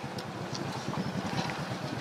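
An engine running steadily, a low rapid throb.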